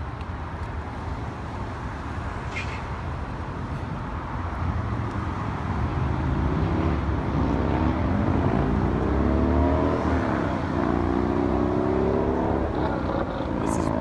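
Road traffic on the street below the walkway, with a vehicle engine accelerating in the second half, its pitch climbing and dropping several times.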